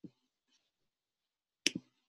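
Computer mouse clicked near the microphone: a soft knock at the start, then a sharp double click near the end.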